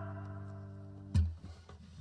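The song's last guitar chord ringing out and slowly fading, then a sudden low thump a little over a second in, followed by a few faint knocks.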